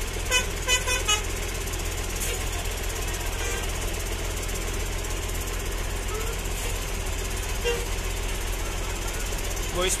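Tour buses idling, a steady engine rumble, with a few short horn toots in the first second.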